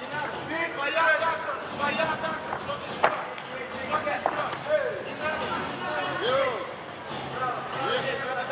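Shouting voices from the crowd and corners at a Muay Thai bout, with a sharp smack of a strike landing about three seconds in and a lighter one about a second later.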